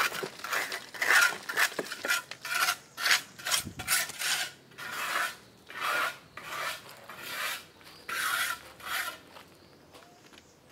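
Handling noise on a phone's microphone: fingers rubbing and scraping against the phone as it is moved about, in irregular strokes about one or two a second.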